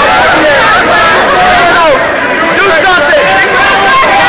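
A crowd of spectators shouting and calling out over one another, many voices at once, loud.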